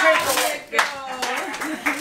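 People's voices exclaiming without clear words, over a few sharp crackles of duct tape being pulled and crumpled off a child.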